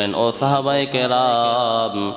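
A man's voice in the drawn-out, sing-song intonation of a sermon, holding one note for about a second near the end.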